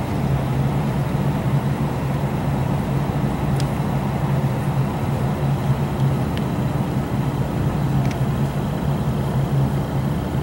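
A steady low mechanical hum, like a motor running, holds at one pitch throughout. A few faint light clicks come through it.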